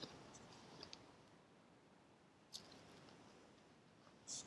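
Near silence with faint rustling and small clicks from a paper picture book being handled as its page is turned, including one brief rustle about two and a half seconds in.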